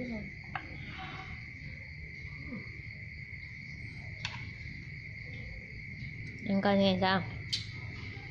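Crickets trilling in one steady high note, with a few light clicks. A person's voice sounds briefly about six and a half seconds in, and it is the loudest sound.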